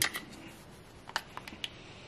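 A few small clicks and taps from a plastic digital multimeter case being handled and pried open, most of them about a second in.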